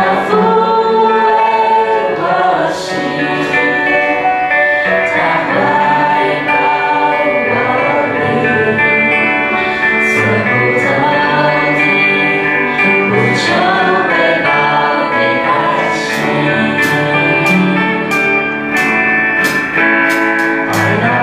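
A Christian worship song sung in Mandarin by a group of singers with band accompaniment. Short, sharp percussion hits come more often in the last few seconds.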